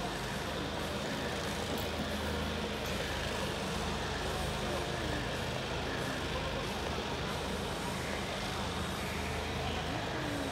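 Steady open-air stadium ambience: an even low rumble and hiss with faint, indistinct voices.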